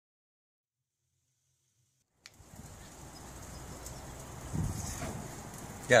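Silence for about two seconds, then steady outdoor background noise with a low rumble of wind on the microphone.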